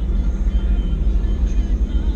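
Steady low rumble of a small car on the move, heard from inside the cabin: engine and road noise.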